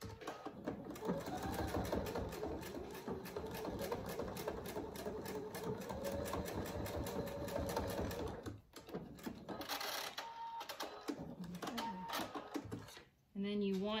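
Electric sewing machine stitching through the folded cotton of a dog collar: a steady run of rapid stitches for about eight seconds, then a brief pause and several shorter bursts of stitching before it stops near the end.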